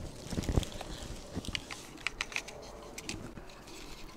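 Small plastic clicks and taps from a Lexus GS450H inverter harness connector being handled and pushed into the inverter's socket. The clicks come in a quick irregular scatter, thickest about one and a half to two and a half seconds in.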